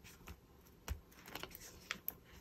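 Clear plastic film handled over a paper journal page: a few faint crinkles and taps, with a soft low thump about a second in and a sharper tick near the end.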